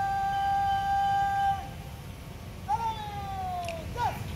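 A bugle holding one long, steady high note that stops about a second and a half in, followed near the end by a second drawn-out tone that falls in pitch, as the guard stands on arms reversed in salute to the fallen.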